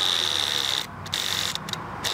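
Cordless drill running with a Gator Grip universal socket, driving a 3/4-inch hex-head lag screw into wood: a steady motor whine that cuts out a little under a second in, then runs again briefly before stopping near the end.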